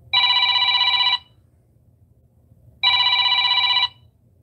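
Telephone ringtone for an incoming call, ringing twice. Each ring lasts about a second, and the two are a little under two seconds apart.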